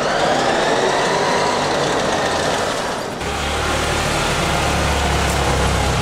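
Electric ATV drive motor whining as it drives, its pitch rising and then falling. About three seconds in, this gives way to a steady low rumble of a utility vehicle's engine running.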